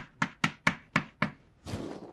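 Chalk writing on a blackboard: about six quick clicks as the chalk strikes the board, roughly four a second, then a longer scratchy stroke near the end.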